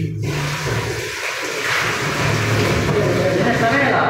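Tap water running into a sink, a steady rush that is loudest about two seconds in, with men's voices underneath.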